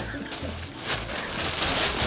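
Crinkling, rustling foil of an inflated balloon disc being handled and worn, a crackly rustle that grows louder about halfway through.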